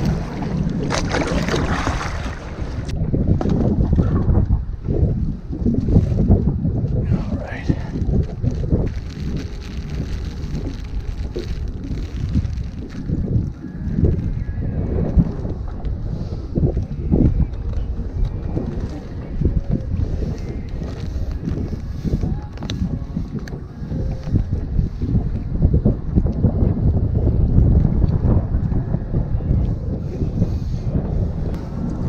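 Wind buffeting the microphone on open water: a low rumble that swells and drops in gusts, with a few light knocks scattered through.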